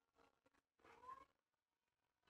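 A faint cat meow about a second in, one short call rising slightly in pitch.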